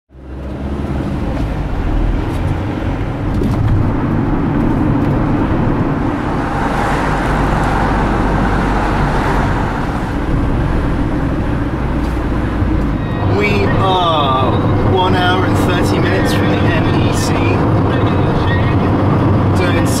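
Steady engine and road rumble inside a moving Ford van's cabin. From about halfway through, voices come in over it.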